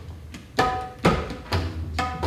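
Tabla played solo: sharp hand strokes on the smaller right-hand drum ring out with a clear pitched tone, about two a second after a brief lull, with the deep resonance of the larger bass drum beneath.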